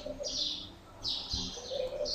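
A small bird chirping in the background: three short high chirps, evenly spaced about two-thirds of a second apart.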